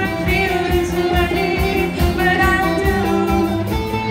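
Live rock band playing through a PA: a girl singing lead over electric guitar, bass and drum kit.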